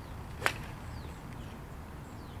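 A golf iron striking the ball once, a single sharp crack, on a swing played as a demonstration shank.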